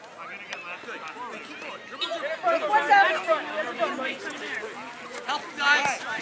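Overlapping high-pitched children's voices calling and chattering on an outdoor field, with the odd adult shout; busiest a couple of seconds in.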